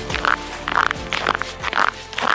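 Footsteps on hard lake ice with spiked ice cleats, a short crisp crunch about twice a second. The tail of background music fades under them.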